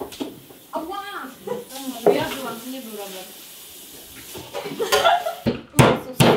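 Indistinct talking among several people in a kitchen, with a steady hiss through the middle and a few sharp clacks of utensils or a drawer near the end.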